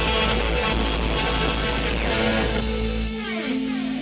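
A live rock band playing loud through a festival PA. About three seconds in, the bass and drums drop out, leaving held notes and several falling pitch slides.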